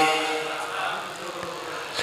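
A pause in a man's chanting over a microphone: his held note dies away in the amplified hall's echo, leaving a low, even room noise until the next line.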